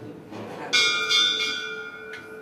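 Temple bell struck: a bright, high metallic ring that starts suddenly about three-quarters of a second in and slowly fades.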